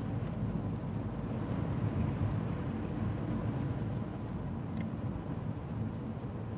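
Steady low rumble of a car heard inside its cabin.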